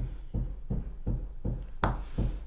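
Soft low thumps about three times a second, with one sharp click near the end: handling noise from a makeup blending brush working eyeshadow.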